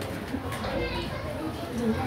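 Children's voices: faint talk and chatter from young boys, with no single word standing out.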